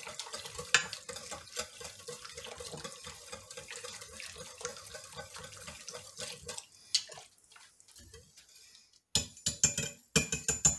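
Wire whisk stirring thin sauce in a stainless steel pressure-cooker pot: rapid wet swishing with the wires clicking against the metal. It goes quieter about seven seconds in, then gives louder, sharper metal strikes in the last second.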